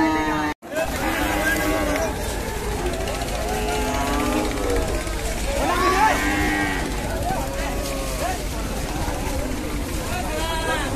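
Cattle mooing among men's shouts and chatter, with a short break in the sound about half a second in.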